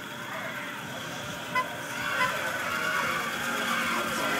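Engine of an old conventional-cab school bus running as the bus pulls slowly past and grows louder, with two short horn toots about a second and a half and two and a quarter seconds in.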